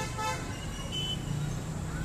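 Steady rumble of distant city road traffic, with a short higher-pitched sound at the very start.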